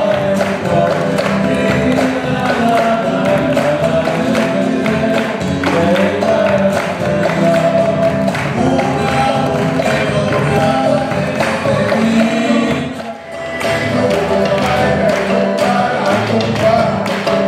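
Live Afro-Peruvian music: singing over guitar and percussion, with hand clapping keeping the rhythm. The music briefly drops away about thirteen seconds in.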